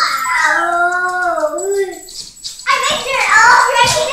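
A small dog's long howling whine, one call wavering up and down in pitch for about two seconds, followed after a brief pause by a voice.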